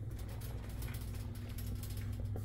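A rapid run of faint mechanical clicks over a steady low hum.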